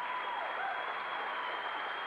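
Audience applauding, with a long, high steady tone held over it for most of the time.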